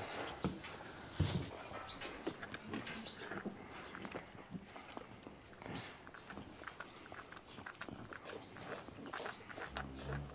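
Newborn twin calves suckling from teat bottles: faint, irregular sucking and smacking, with straw rustling under them.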